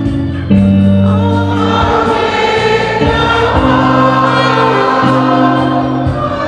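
Church congregation singing a hymn together over instrumental accompaniment, in sustained notes that change chord every second or two.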